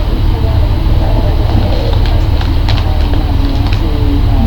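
Potato chips being chewed, with a few crisp crunches about two and a half seconds in and near the end, over a loud, steady low rumble.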